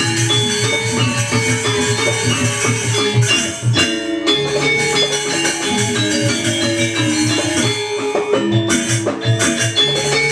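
Balinese gamelan ensemble playing: bronze metallophones ringing in quick runs of notes over a steady low pulse, with a short break in the low notes about four seconds in.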